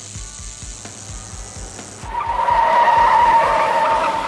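Logo intro music with a steady low beat. About halfway through, a loud tyre-squeal sound effect comes in over it, held at one pitch.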